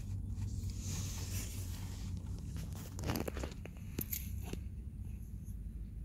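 Steady low hum inside a parked car's cabin, with a few small clicks and rustles of something being handled about three to four and a half seconds in.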